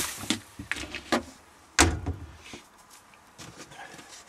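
Light clicks and knocks of a kitchen cupboard being handled in a camper van, with one loud bang a little under two seconds in as the cupboard door is shut.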